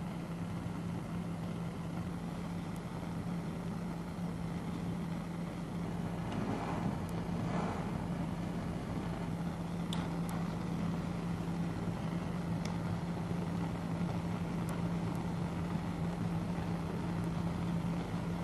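A steady low hum over a constant hiss, with a few faint clicks and a soft rustle partway through.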